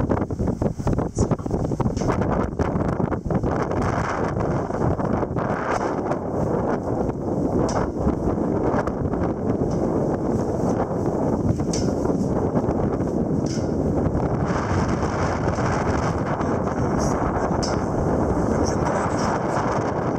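Strong wind buffeting the microphone on the deck of a sailing ship: a steady, loud rushing noise with scattered short clicks and snaps.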